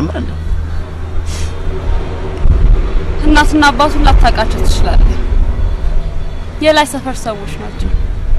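A woman talking, in two short stretches, over a steady low rumble that grows louder about two and a half seconds in.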